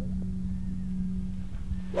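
A steady low hum, then right at the end one sharp crack as a golf club strikes the ball off the fairway.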